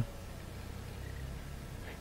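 Faint steady low rumble of a car engine idling, heard from inside the parked car's cabin.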